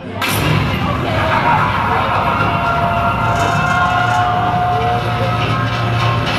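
Roller coaster loading station ambience: a steady low hum with the chatter of seated riders and a few clicks.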